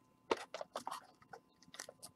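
Trading cards and a torn pack wrapper handled by gloved hands: faint crinkling and rustling, a cluster of short crackles in the first second and a few more near the end.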